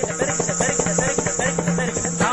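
Fast, even percussion accompanying South Indian classical dance: rapid drum strokes, about eight a second, over a steady drone.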